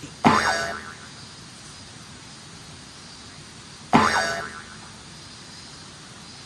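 A cartoon "boing" sound effect, heard twice: each a sudden springy tone that dies away in about half a second, the second about three and a half seconds after the first. A steady low hiss runs underneath.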